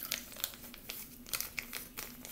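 Crinkling of a small packet of seedling plant-vitamin powder being shaken and squeezed as it is emptied into a container of water, with scattered light crackles.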